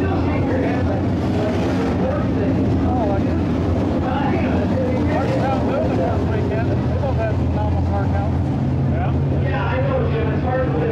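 Dirt-track modified race car engines running at a steady pitch, with voices in the background.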